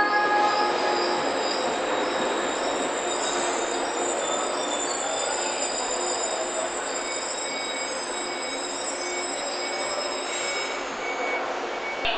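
JR West 115 series 3000-subseries electric train pulling into the platform and braking to a stop. Its wheels and brakes squeal in several steady high tones over a rolling rumble that slowly fades away near the end.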